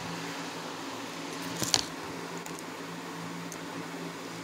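Room background with a steady low electrical hum, a single sharp click at the very start and a brief soft rustle a little under two seconds in.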